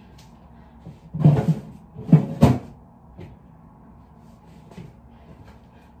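Fridge door being handled: three loud thuds and knocks between about one and two and a half seconds in, with a few faint clicks after.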